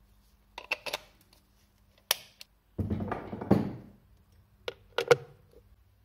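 Hardware being handled by hand: a few sharp clicks and knocks, a scraping rustle lasting about a second in the middle, then two more clicks, over a faint low hum.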